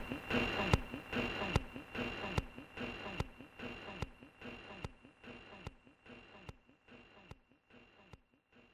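Live-recording audience noise dying away after laughter, with a sharp click a little more often than once a second and a faint steady high whine, the whole recording fading out.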